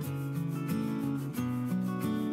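Background music: a steady strummed tune whose notes change in steps, with an even rhythmic beat.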